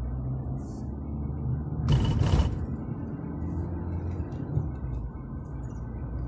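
Steady low rumble of a car driving, with a short, loud hiss lasting about half a second, about two seconds in.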